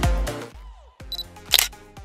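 Dance music fades out into a quiet gap, then a camera's short high focus beep just past halfway and a sharp shutter click near the end.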